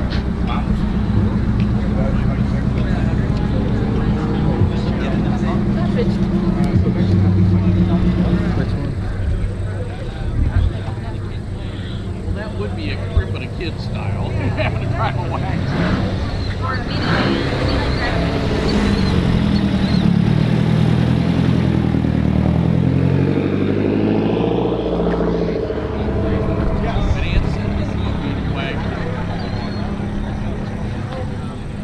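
Car engines running: a steady engine drone through the first third, then, from about two-thirds of the way through, an engine whose pitch swings up and down for several seconds, as of a car driving slowly past. Indistinct voices in the background.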